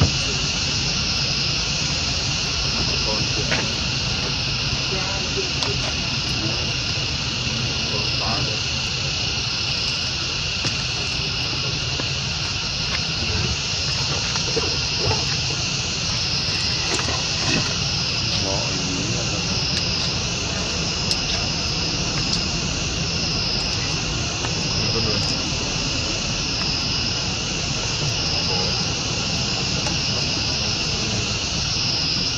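Steady high-pitched chorus of insects, its upper tone wavering in a regular pulse about once a second, over a low steady rumble.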